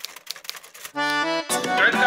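Opening title theme music: soft ticking percussion, then about a second in a held chord, and halfway through the full, much louder band comes in with a melody.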